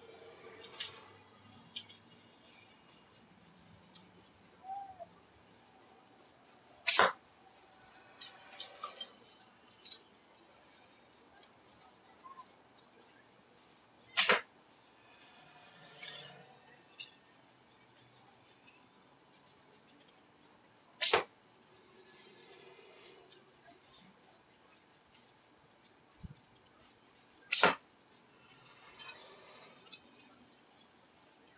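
A PVC pipe bow is shot four times, about seven seconds apart. Each release is a short, sharp, loud snap of the string, with quieter knocks and rustles in between as the next arrow is handled.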